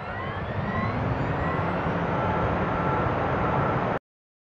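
Sound effect of a car accelerating: engine noise building in loudness over the first second, its pitch rising and then levelling off, and cutting off abruptly at the end.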